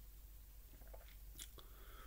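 Near silence, with a few faint mouth clicks as a person tastes a sip of tea, about a second and a half in.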